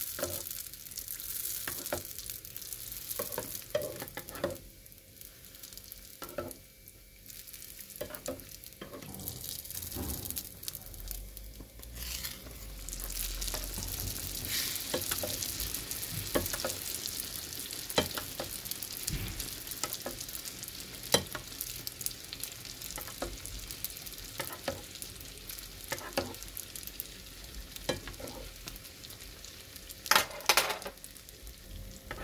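Sfenj dough deep-frying in hot oil in a pan, sizzling steadily with scattered crackles and clicks as a metal spoon bastes oil over its top. The sizzle grows louder about twelve seconds in.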